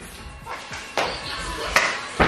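People moving about and dancing on a hard floor, with faint voices and two sharp knocks, one about a second in and one near the end.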